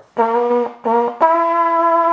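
Old valveless military signal bugle (dienstklaroen) blown: two short notes at one pitch, then a step up to a longer, higher note held steadily. The higher note comes from tightening the lips, since the instrument has no valves.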